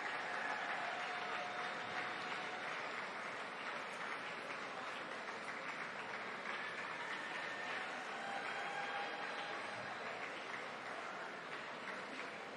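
Audience applauding steadily, tapering off slightly toward the end.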